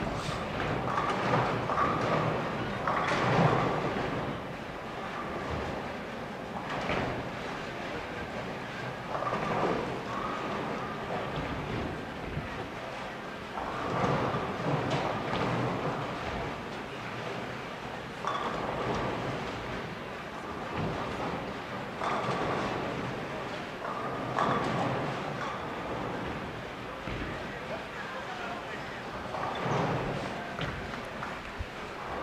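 Bowling-centre din: balls rolling down the lanes and pins crashing in bursts every few seconds, over a steady murmur of crowd voices.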